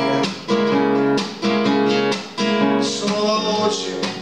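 Classical nylon-string guitar strummed in a steady rhythm of chords, an instrumental passage with no singing.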